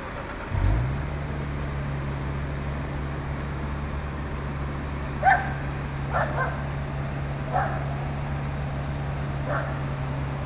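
Yamaha SR500's air-cooled single-cylinder four-stroke engine catching about half a second in, rising briefly in pitch and then settling into a steady idle. Over the idle come four short, high yelps, the loudest about halfway through.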